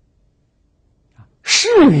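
Near silence for about a second and a half, then a man's voice starts speaking Mandarin ('世缘…'), opening with a hissy 'sh' sound.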